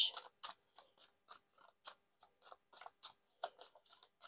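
A deck of tarot cards being shuffled by hand: a faint, irregular run of soft clicks and flicks of card against card, a few each second.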